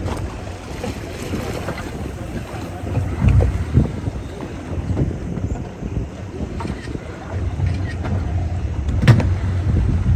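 Low rumble of a boat's outboard engine idling offshore, mixed with wind buffeting the microphone and water moving along the hull. A single sharp knock about nine seconds in.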